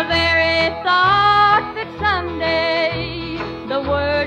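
1950s Nashville country record: a small band of guitars, bass, drums and piano, with a woman's singing voice carrying the melody over a bass line that pulses on the beat.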